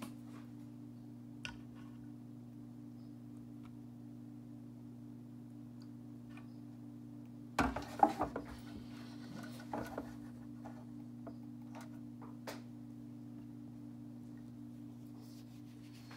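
A steady low electrical hum, with a short cluster of clatter and knocks about halfway through and a few light clicks after it.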